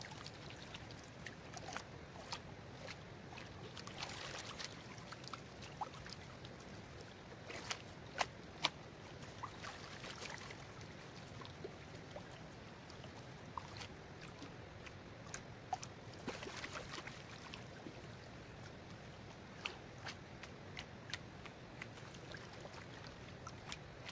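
Gold pan being swirled and dipped in shallow water while panning down gravel: faint sloshing and trickling of water over the pan, with short splashes and clicks now and then.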